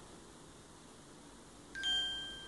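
Faint room noise, then near the end a steady electronic beep with a clear high pitch starts from the phone.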